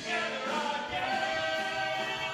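Live musical-theatre song: male voices singing over an orchestra accompaniment.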